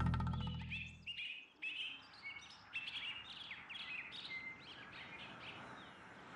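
The last sustained chord of a cumbia song fades out over the first second. Birds chirp over it and on after it, many short, high chirps in quick succession that thin out toward the end.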